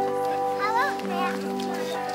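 Background music: a sustained chord of steady held notes, with a child's voice rising and falling briefly over it about halfway through.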